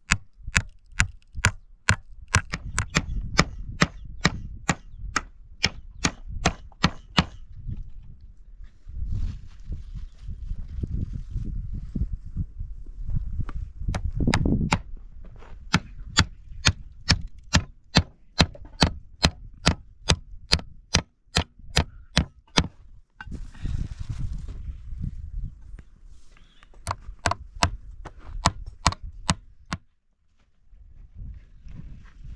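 A steel hammer drives nails into rough wooden planks to build a door. The blows come in quick runs of about three a second, with short pauses between the runs.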